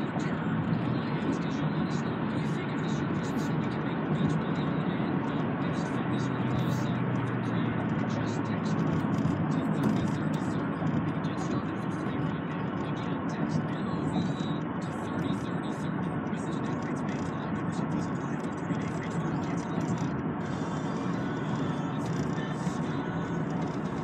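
Steady road and engine noise inside the cabin of a moving car, at an even level, with a radio playing faintly underneath.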